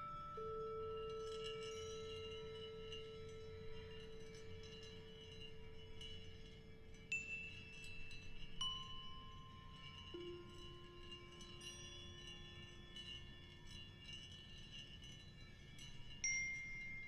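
Quiet contemporary chamber music: a cello holds a long soft note and steps down to a lower one about ten seconds in. Bell-like struck tones ring out over it and slowly fade, with fresh strikes about seven and eight and a half seconds in.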